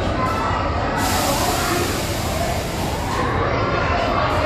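Noisy ambience of a large indoor hall: a steady low rumble with indistinct voices in the background. A hiss starts about a second in and stops about two seconds later.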